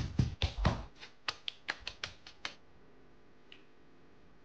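Meat mallet pounding raw chicken breast through paper on a wooden cutting board: about a dozen blows, the first few heavy and dull, then quicker, lighter, sharper taps that stop after about two and a half seconds.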